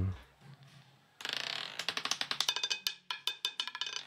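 Roulette ball dropping from the track and clattering over the spinning wheel's pocket separators. It starts with a short swish about a second in, then runs as a quick, irregular run of sharp clicks for about two seconds as the ball bounces toward a pocket.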